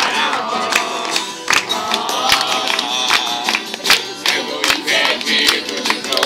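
A group singing together to two strummed acoustic guitars, with hand claps on the beat about every 0.8 seconds.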